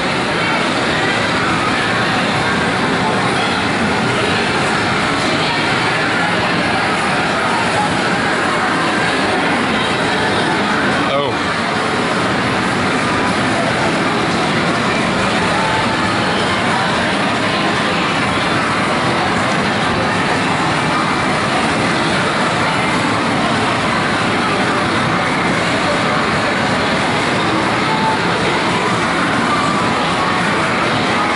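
Loud, steady din of a game arcade, with the sounds of many machines and people's voices blending into one unbroken wash.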